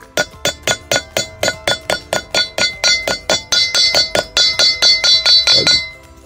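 Hammer tapping a grease seal into the hub of a steel trailer brake drum, about four quick, even taps a second, each strike leaving the drum ringing. The taps grow louder toward the end as the seal is driven in square.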